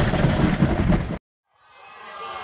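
Thunder sound effect, a crackling rumble that cuts off suddenly just over a second in; after a short silence, music fades in near the end.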